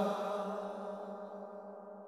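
The last held note of a male-voice Islamic devotional song (gojol), one steady pitch fading away.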